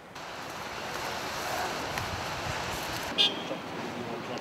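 Outdoor ambience with a steady wash of distant road traffic, and a short high-pitched chirp a little past three seconds in.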